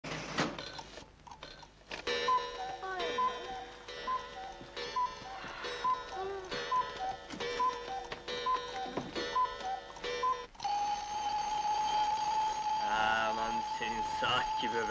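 A rhythmic run of short beeps alternating between two pitches over a held tone. About ten and a half seconds in, it gives way to a steady, loud alarm-clock ring waking the sleepers.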